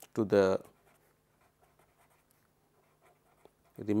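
Felt-tip pen writing on paper: faint scratching and light ticks of the tip while words are written out by hand. A man's voice speaks two short words, one near the start and one at the very end.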